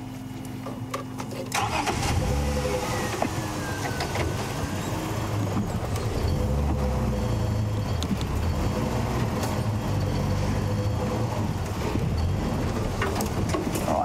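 Engine of an open safari game-viewing vehicle, louder about a second and a half in as the vehicle moves off, then running steadily at low speed.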